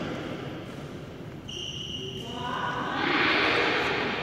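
Court shoes squeaking on a badminton court's rubber mat as players shuffle into position, with a short high squeak about halfway through, followed by a louder rushing scuff near the end.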